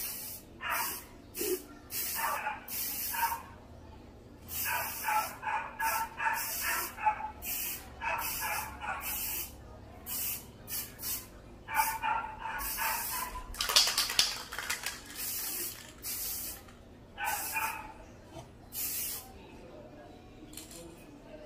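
Aerosol spray can of clear top coat hissing in many short bursts, from a fraction of a second to about a second each, the loudest about two-thirds of the way through, as a gloss sealer is sprayed over gold foil leaf on a painted terracotta vase.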